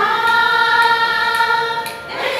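Group of women singing together, holding one long sustained note that breaks off just before the end.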